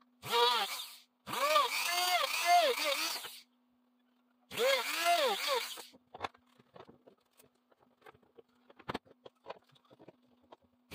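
A voice in three stretches, its pitch sliding up and down, followed by light scattered clicks and taps and one sharper knock near the end.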